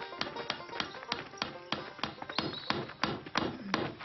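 Steady hammering, about three sharp blows a second, with a short ring after each, over background music.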